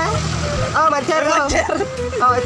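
Voices, loudest around the middle, with a steady low background hum; no separate sound of the grain being handled stands out.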